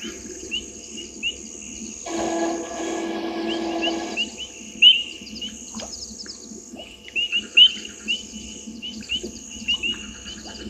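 Night-time animal chorus at a waterhole: short high chirps repeating about once or twice a second over a steady high-pitched hiss. A low buzzing hum sounds for about two seconds, starting around two seconds in.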